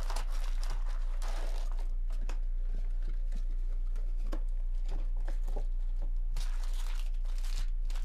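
Foil trading-card packs and a cardboard box crinkling and rustling as the packs are handled and pulled out, in one stretch at the start and another near the end, with scattered light taps and clicks. A steady low electrical hum runs underneath.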